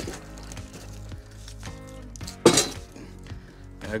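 Firewood logs being fed into the steel firebox of a kazan stove, knocking against the metal, with one loud clunk about two and a half seconds in. Quiet background music runs underneath.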